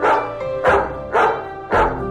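A dog barking four times, about half a second apart, over gentle background music.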